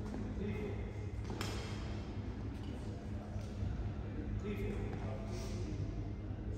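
Badminton racket striking a shuttlecock: one sharp crack about a second and a half in, then fainter hits later, over the steady low hum of a large sports hall and indistinct voices.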